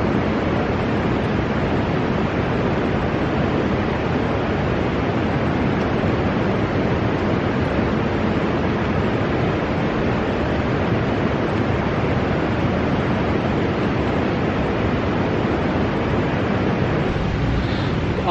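Steady rushing noise, even and unbroken, with no separate crackles or knocks standing out.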